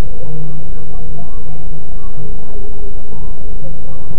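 Bus engine idling in a steady low drone, picked up loud and distorted by a CCTV microphone. Faint voices murmur underneath.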